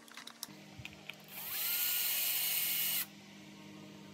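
Cordless electric screwdriver running in one burst of about a second and a half, its whine rising as it spins up and then cutting off sharply, turning a screw in a vacuum cleaner's cord reel.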